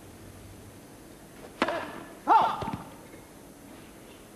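A tennis serve struck with a sharp crack about one and a half seconds in, followed under a second later by a loud shouted line call from a line judge, the loudest sound, calling the serve out as a fault.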